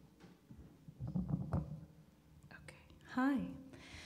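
Soft murmured and whispered voices, then a short voiced syllable from a person about three seconds in.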